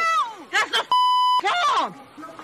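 Raised, shouting voices, cut about a second in by a half-second steady 1 kHz censor bleep over a word.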